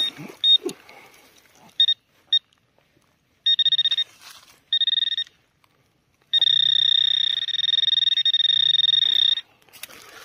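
Handheld metal-detecting pinpointer probing loose soil, sounding its high electronic beep: a few short pips, then two longer beeps about a second apart, then a steady tone for about three seconds near the end as its tip closes on a buried metal target. A low buzz runs under the longer tones.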